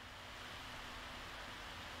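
Faint, steady hiss with a faint low hum: the background noise of a voice-over microphone.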